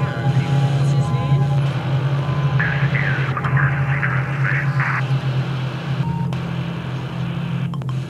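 A loud, steady electronic hum with faint steady tones over it, the soundtrack of a glitchy title sequence. For about two seconds near the middle, a garbled, radio-like warbling cuts in over the hum.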